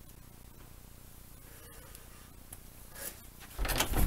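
Quiet room tone, then near the end a short clatter of knocks and handling noise as a toy door is worked open.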